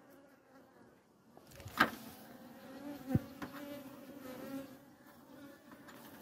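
Honeybees buzzing at a hive, a steady hum that comes in about a second and a half in, with two sharp knocks, the louder one near the two-second mark and a second about a second and a half later.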